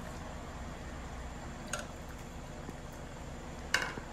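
A metal pot and wooden spoon at work as boiled purslane is scooped out of the pot into a simmering pan of stew. A knock comes a little before halfway and a louder clink near the end, over a steady low hiss.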